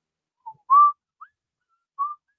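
A person whistling a few short notes of a tune: a brief note, then a louder, longer note that rises slightly about three-quarters of a second in, then two faint short notes.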